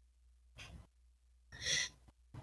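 A person's breathy sigh near the end, with a fainter puff of breath about half a second in, over a low steady hum.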